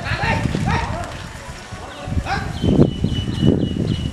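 Indistinct men's voices close by, with knocks in the middle and a steady high tone through the second half.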